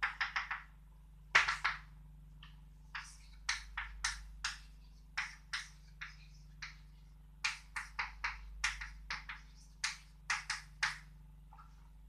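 Chalk writing on a blackboard: short, sharp taps and scratches of the chalk, coming in irregular runs of a few strokes at a time as symbols are written out.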